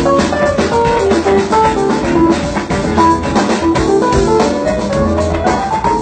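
Live band playing a funk-soul groove: drum kit keeping a steady beat under electric guitar and keyboard lines.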